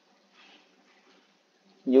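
Near silence: faint room tone with a brief faint sound about half a second in, then a man's voice starts speaking near the end.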